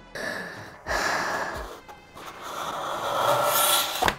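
Cardboard box lid being lifted and handled: three stretches of scraping and rustling, the last and longest running up to about the fourth second.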